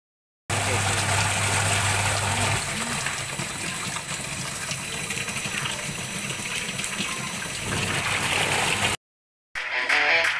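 Washing machine wash tub running, with its motor driving the pulsator and water churning and sloshing in the tub. A steady low motor hum stands out for the first two seconds or so, and the sound cuts off suddenly near the end.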